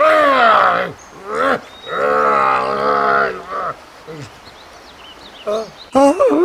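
Two loud, drawn-out cries: a falling one at the start and a long, steady one about two seconds in. Faint short high chirps follow near the end.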